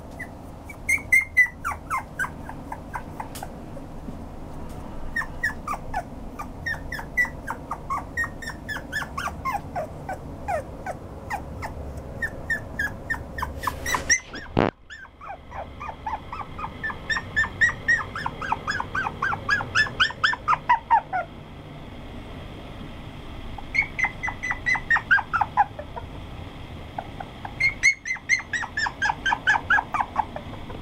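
Toy poodle puppy whimpering: runs of short, high, falling whines, several a second, coming in clusters. A sharp click comes about halfway through.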